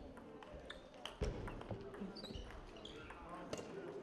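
Table tennis ball clicking off bats and the table in irregular strikes, with a heavier thump about a second in. Voices murmur in the background of the hall.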